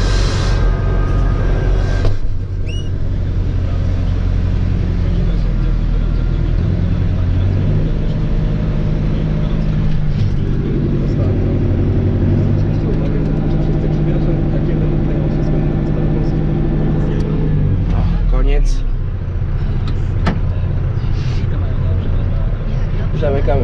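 Tractor engine running steadily, heard from inside the cab, its revs rising about eight to ten seconds in and dropping back near the end. A single knock about two seconds in.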